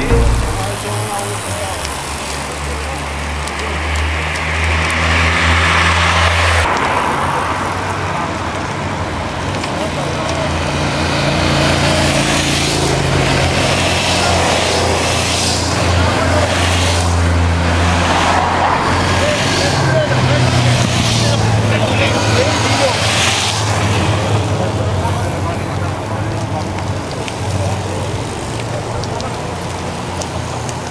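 Motor vehicle engines running in road traffic, a steady low hum with swells of passing-vehicle noise rising and fading between about ten and twenty-four seconds in, mixed with indistinct voices.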